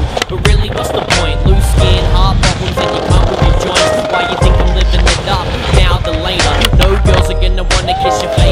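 Skateboard wheels rolling and the board clacking on concrete, mixed under a hip-hop backing track.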